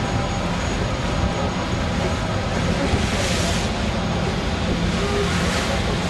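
Steady ship engine rumble mixed with wind and rushing water, heard on the deck of a vessel under way. The hiss of water swells about halfway through and again near the end.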